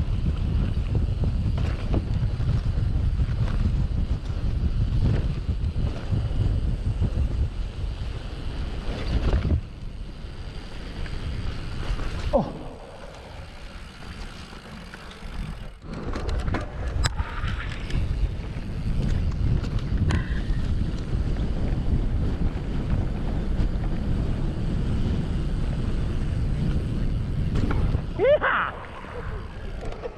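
Wind buffeting the microphone of a camera on a mountain bike riding fast downhill over rough grass, a loud steady rumble that eases for a few seconds around the middle as the bike slows, then picks up again.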